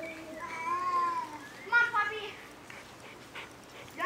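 A young child's voice: two short high-pitched calls in the first half, then a quieter stretch.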